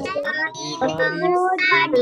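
Several young children reading a storybook line aloud together in a sing-song chant, their voices overlapping and out of step, heard over a video call.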